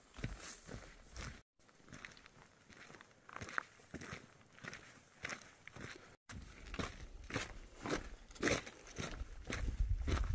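A hiker's footsteps on a dirt and gravel mountain trail, a steady walking rhythm of about two crunching steps a second. A low rumble comes in near the end.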